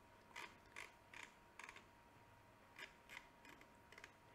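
Faint, irregular clicks of a computer mouse, about a dozen short clicks scattered through near silence as a list is scrolled, with a faint steady high hum underneath.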